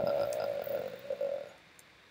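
A man's voice holding a drawn-out hesitation sound on one steady note for about a second and a half, then stopping.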